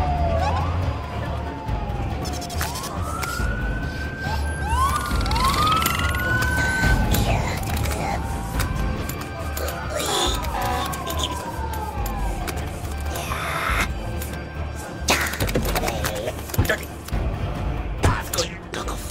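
Emergency-vehicle sirens wailing, several rising and falling glides overlapping, over a low rumble and a music score, with a couple of short noisy bursts near the end.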